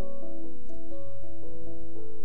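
Church keyboard playing slow, sustained chords that change every half second or so over a held low bass note.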